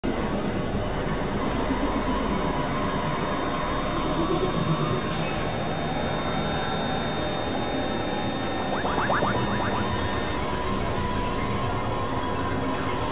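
Experimental electronic noise-drone music from synthesizers: a dense, steady grinding texture with thin whistling tones held high above it. The deep rumble underneath drops out about halfway through, and a quick flurry of short chirps sounds near the end.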